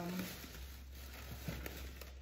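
Plastic grocery packaging handled off-frame, a soft rustling with a few light clicks. A low steady hum starts about half a second in.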